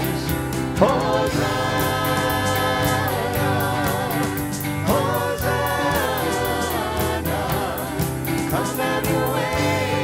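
A church worship band: a group of mixed voices singing a hymn in harmony, with held notes, backed by acoustic and electric guitar over a steady beat.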